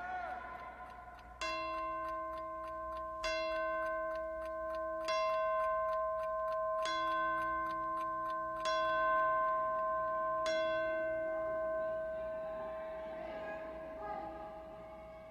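A clock striking the hour: six bell strokes about two seconds apart, each ringing on until the next.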